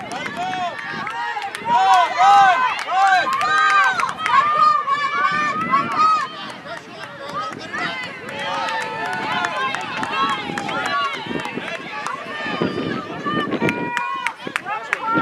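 Several girls' high-pitched voices shouting and calling out across an outdoor field, overlapping, with no clear words; loudest in the first half.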